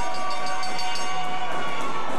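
A loud, long held horn-like chord of several tones together, fading out about a second and a half in, as low repeating music notes begin.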